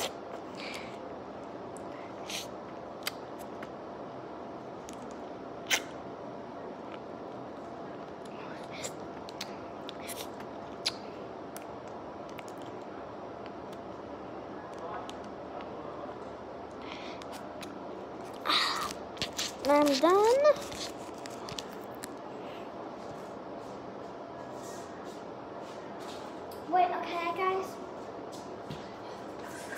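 Soft, scattered clicks and mouth sounds from a child sucking jelly out of a plastic jelly pouch, over a steady room hum. A short wordless vocal sound with a rising pitch comes about two-thirds of the way in, and another brief one near the end.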